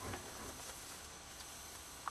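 Faint steady background hiss with no distinct sounds: quiet room tone inside an enclosed hunting blind.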